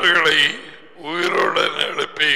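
A man talking into a headset microphone, with a short break about half a second in before he speaks again.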